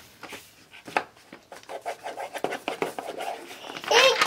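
Wax crayon scribbling on a paper worksheet and paper being handled: a run of small scratches and taps on the table, with one sharper tap about a second in.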